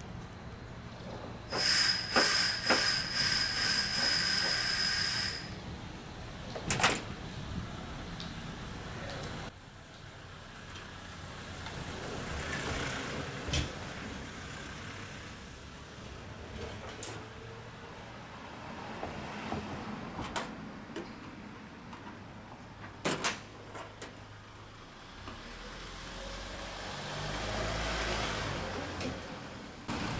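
Pressurised gas hissing in rapid spurts for a few seconds from the service valve of a Samsung wall-mount air conditioner's outdoor unit, blown through to clear debris from the valve. Later come several sharp metallic clicks and softer swells of hissing.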